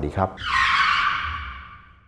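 A whoosh transition sound effect: a hiss of noise with no low end that starts about half a second in and fades away over about a second and a half.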